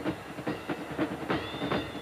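Stadium crowd noise with many sharp, irregular knocks or claps, and a single high whistle tone held for over a second, starting past the middle.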